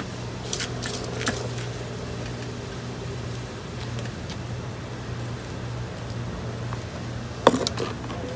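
A steady low mechanical hum with a few faint clicks. About seven and a half seconds in, a short louder burst of rustling clicks as a hand works among the potted succulents and soil.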